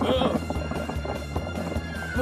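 Cartoon background music with a quick, even, clip-clop-like knocking rhythm, and a brief wordless cartoon vocal near the start.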